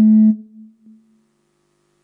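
A single held musical note, steady in pitch, that cuts off abruptly about a third of a second in and fades out within the next second, leaving a faint steady hum.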